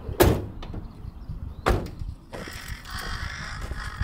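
Renault Kangoo's rear barn doors slammed shut, one and then the other, two solid thuds about a second and a half apart. A fainter bird call follows in the background.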